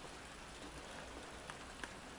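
Light rain falling on wet paving: a faint, steady hiss of rain, with a couple of single drop ticks in the second half.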